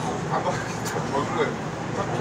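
Indistinct chatter of passenger voices over a steady low hum, inside a subway car standing at a station.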